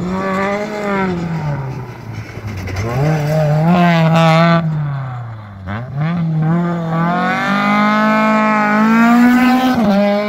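Lada rally car engine driven hard on track, its pitch falling, then climbing steeply about three seconds in. It drops off sharply near six seconds, as on a lift or gear change, then climbs again and drops just before the end.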